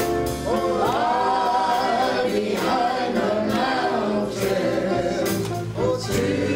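A man and a woman singing a gospel song together in long held notes that slide up into pitch, with other voices joining in.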